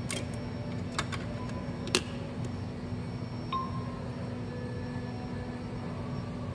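A few sharp clicks and taps as a phone and its cable connector are set in an ecoATM kiosk's test tray, the loudest about two seconds in. About halfway through, the kiosk gives a short electronic chime tone, all over a steady low hum.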